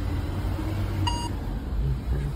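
A single short electronic beep about a second in, over a low steady hum.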